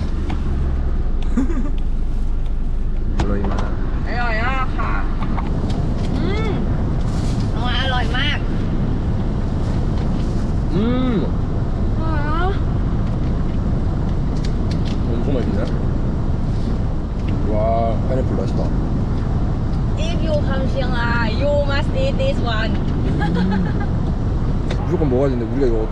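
Steady low rumble of a car's engine and road noise heard inside the cabin, with short bits of voice over it.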